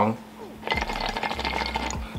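Water sloshing inside a glass beaker bong as it is moved, a fine crackly patter starting under a second in.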